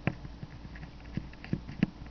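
A handful of light, irregular clicks and taps as metal multimeter probe tips are pressed and shifted against the pins of an engine temperature sensor's connector.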